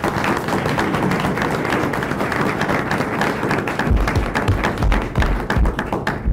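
Applause: many people clapping steadily, with a few low thumps in the second half.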